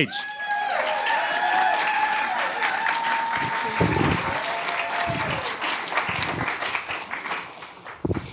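Audience applauding: dense clapping with some held cheers over it, fading out near the end.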